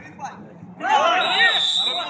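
Several men shouting at once as a tackle brings a player down, joined about halfway through by a long, steady blast of a referee's whistle stopping play for the foul.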